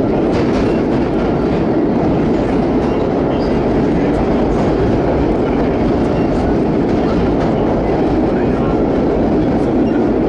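Vintage R1-9 subway cars running through a tunnel, heard from inside the car: a loud, steady rumble of wheels on rail, with faint scattered ticks.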